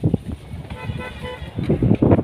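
A horn sounds one short steady note, under a second long, in the middle. Around it are low thumps and rustling, loudest near the end, from the nets being handled.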